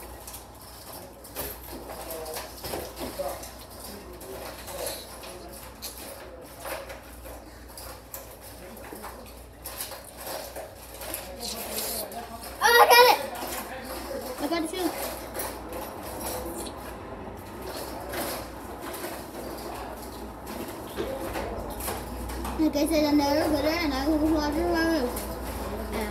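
A child's voice, mostly low and indistinct, with soft mouth noises as she sucks at a jelly held in toy finger-hands; a short, loud, high-pitched squeal breaks out about 13 seconds in, and a drawn-out vocal sound comes near the end.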